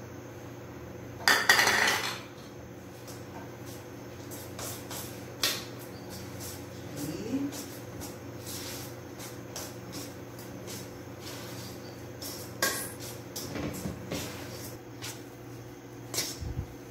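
Metal spoon scraping and clinking against a stainless steel mixing bowl while crumbly polvilho dough is stirred after an egg is added. The sounds are scattered taps and scrapes; the loudest, a longer scrape, comes about a second and a half in.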